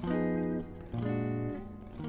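Electric guitar, tuned a half step down, playing two chords struck about a second apart, each left to ring out: the opening chords of a ii–V–i progression in E minor.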